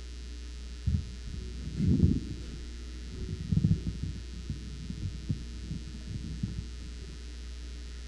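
Handling noise on a stand-mounted microphone as it is gripped and adjusted: irregular low thumps and rumbles, the strongest about two and three and a half seconds in, fading to light knocks, over a steady low electrical hum.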